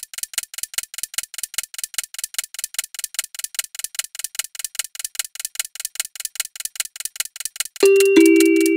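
Countdown timer sound effect: rapid, even clock-like ticks, about five a second. Near the end, a two-strike ding-dong chime rings out over the ticking.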